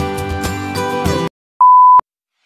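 Background music with held notes cuts off suddenly; after a brief silence a single loud, steady, high test-tone beep sounds, the tone that goes with a TV colour-bars test pattern, used here as a glitch transition effect.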